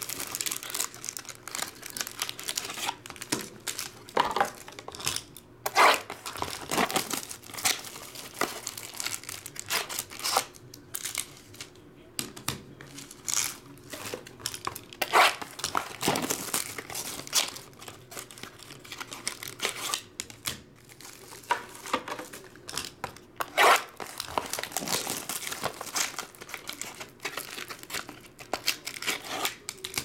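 Clear plastic shrink wrap crinkling and tearing as hands strip it from a box of trading cards and handle the packs, an irregular run of crackles with sharp louder rips every few seconds.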